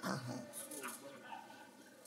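Faint voices in a large reverberant hall: a short vocal sound falling in pitch in the first half-second, then low murmuring that fades out.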